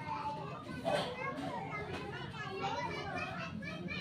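Children's voices talking and calling, high-pitched, with a low steady hum underneath.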